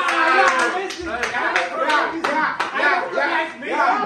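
A group of young people laughing and exclaiming over each other while one of them claps his hands several times, sharp and irregular.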